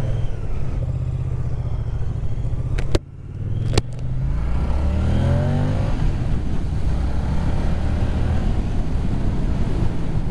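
Moto Guzzi V100 Mandello's 1042 cc 90-degree V-twin running at low speed as the bike pulls away, with two sharp clicks about three seconds in. The engine note then rises as it accelerates and settles into steady running.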